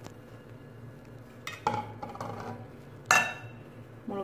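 Small metal bowls clinking as they are picked up, tipped over a mixing bowl and set down. There are a couple of light knocks about one and a half seconds in and a louder, ringing clink about three seconds in.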